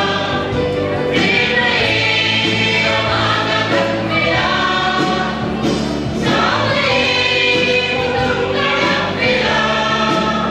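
Church choir of women's and men's voices singing a hymn together, with held low notes underneath.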